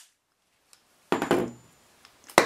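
Near silence for about a second, then a single knock of something hard set down on a wooden work bench, fading over about half a second.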